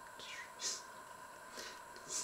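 A small kitchen knife cutting through ripe plums and scraping out their stones: a few short, faint scraping and squishing sounds, the loudest about two-thirds of a second in. A steady faint hum runs underneath.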